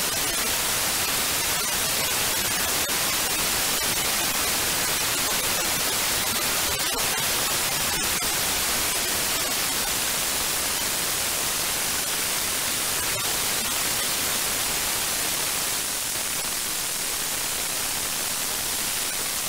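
Radio receiver static: a steady hiss from a software-defined radio tuned to the Soyuz VHF voice downlink near 121.75 MHz, with no voice on the channel and a few faint clicks.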